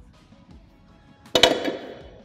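A loaded barbell lands on the gym floor about a second and a half in. It makes a sharp double impact as both plated ends hit, followed by a short ringing rattle of the bar and plates.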